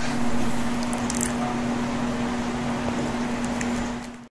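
A steady low hum on one constant pitch over an even hiss of room noise, with a few faint clicks about a second in.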